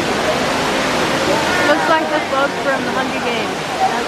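Tall indoor waterfall falling down a planted artificial mountain inside a glass dome: a loud, steady rush of water. People's voices talk over it from about two seconds in.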